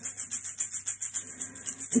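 Steady, fast ceremonial percussion beat, about seven strokes a second, with a bright rattling edge.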